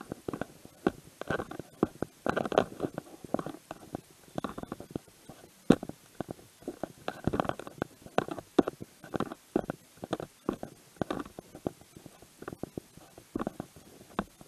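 Irregular rumbling and knocking handling noise on a body-worn action camera's microphone as the wearer walks.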